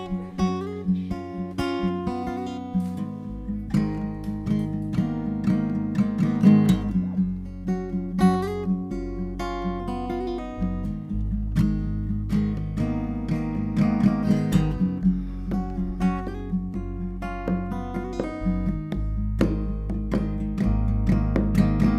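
Live acoustic band instrumental: a steel-string acoustic guitar strummed and picked in a steady groove, with congas played by hand. A low bass line comes in about three seconds in.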